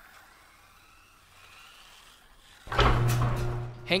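Garage door closing, starting suddenly about two and a half seconds in after near-quiet room tone, with a steady low hum that carries on.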